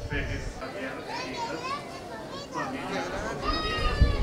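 Indistinct high-pitched children's voices calling and chattering over a background of crowd voices, with low rumbling thumps near the start and end.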